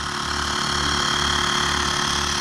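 Handheld electric tyre inflator running steadily while pumping up a motorcycle's rear tyre, a small compressor hum with a fast, even pulse; the tyre has a puncture.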